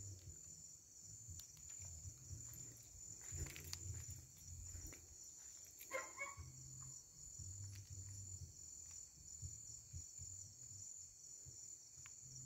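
Faint, steady high-pitched chirring of night insects, with a short sound about halfway through.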